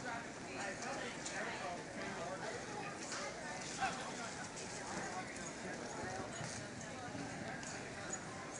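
A galloping horse's hoofbeats on soft arena dirt, scattered through a steady murmur of people talking.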